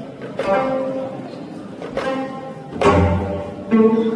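Gayageum, the Korean plucked zither, played in a few slow, separate plucked notes that ring on after each attack. A deep low thud sounds with one note about three seconds in.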